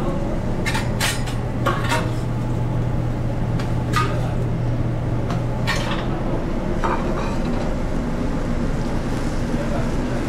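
Metal spatula clanking and scraping against a flat-top griddle and steel pans, about seven sharp clatters spread over the first seven seconds. Underneath runs steady kitchen noise with the sizzle of frying food and a low hum that stops about six seconds in.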